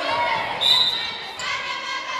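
A handball bouncing on the sports-hall floor amid girls' shouting voices, echoing in the large hall. A short high-pitched tone sounds about two-thirds of a second in.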